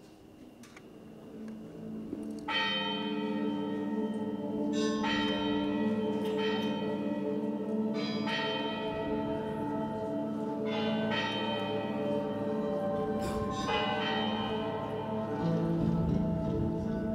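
A series of bell strikes, about seven at uneven gaps of one to three seconds, each ringing on and overlapping the next, over a low sustained drone that swells in during the first couple of seconds.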